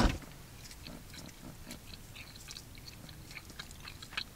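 A person chewing a piece of candy close to the microphone: faint, scattered small clicks and crunches of the mouth. A single sharp click right at the start is the loudest sound.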